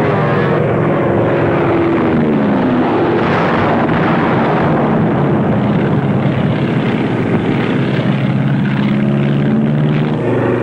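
Propeller warplane engines running loud and steady, with a drop in pitch about two to three seconds in, as of a plane diving past. Heard through a dull, noisy 1940s film soundtrack.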